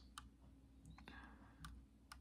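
Near silence with a few faint, light clicks from fingers handling a 1:18 die-cast model car.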